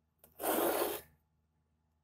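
A single short rubbing scrape lasting under a second, about half a second in: handling noise as the glass flask is moved into place over the spirit lamp.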